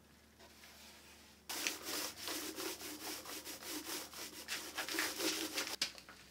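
Paintbrush rubbed back and forth over a freshly painted wooden panel in rapid, repeated strokes. The strokes start about a second and a half in and stop suddenly just before the end.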